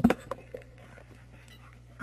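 A pause on an audio line: a steady low electrical hum with faint hiss, after a brief voice-like breath at the very start and a few faint clicks.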